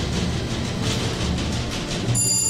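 An old-style lift rumbling and rattling steadily as it travels between floors.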